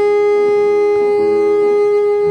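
Saxophone holding one long, steady note over piano accompaniment, the piano's lower notes changing underneath it.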